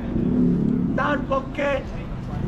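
A steady low hum of city street traffic, with a voice calling out a few short syllables about a second in.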